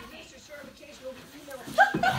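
Faint voices, then a short, high yelp near the end.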